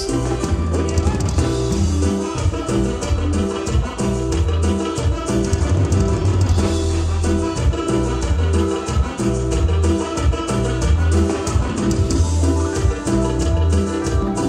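A live cumbia band playing a dance number with no singing: a steady beat on drums and bass under repeating chords, with trumpet and saxophone in the lineup.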